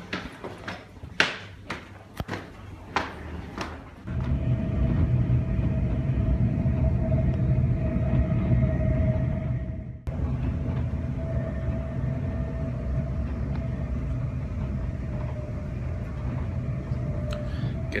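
A few footsteps on stairs. Then, from about four seconds in, the steady low rumble of a moving passenger train heard from inside the carriage, with a faint steady whine above it.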